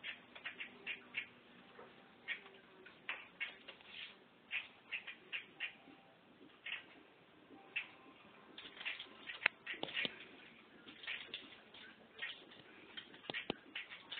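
Lovebird giving rapid, irregular short chirps and squeaks, with a couple of sharper taps near the end.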